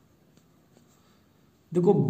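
Faint scratching of a pen writing on paper, a few soft short strokes. A man's voice cuts in near the end.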